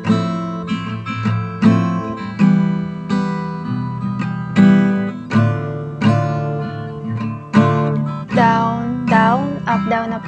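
Acoustic guitar strumming through a chord progression of F, Em, Dm and C. The chord changes every second or two, with repeated down and up strokes.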